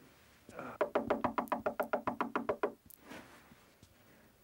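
Short musical cue: a rapid run of repeated pitched notes, about seven a second, lasting about two seconds.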